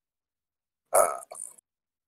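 A single short, hesitant "uh" from a person's voice about a second in, otherwise dead silence.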